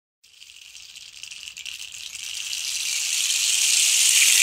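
A percussion rattle or shaker played in a continuous roll that swells steadily from faint to loud, opening the intro music.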